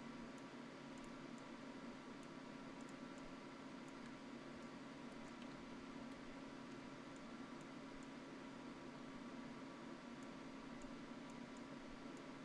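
Faint steady hum and hiss of a quiet room, with scattered faint clicks of a computer mouse.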